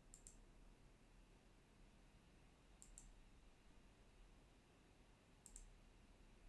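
Faint computer mouse button clicks in a quiet room: three pairs of sharp clicks, about two and a half seconds apart.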